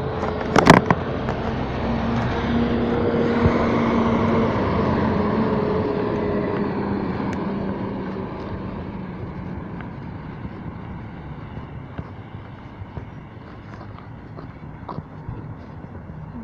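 A car driving past, its engine and tyre noise swelling over the first few seconds and fading away by about ten seconds in, the engine note dropping slightly as it goes. A couple of sharp clicks come just under a second in.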